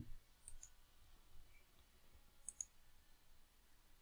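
Near silence with faint computer mouse clicks: a quick double tick about half a second in and another about two and a half seconds in.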